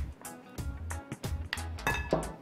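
Wooden spoon knocking and scraping against a small glass bowl as chopped green onions are pushed out into a larger glass bowl: a series of light clinks and knocks.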